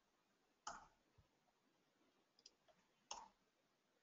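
Two faint, short clicks about two and a half seconds apart, from someone working a computer while running a plugin search, over near silence.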